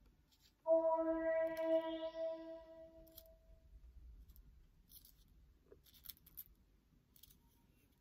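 A single synthesized tone from a Music of the Plants device, which turns the signals of a yellow rose into music, sounding about a second in and fading away over a few seconds. Faint light ticks follow as dried rose petals are handled.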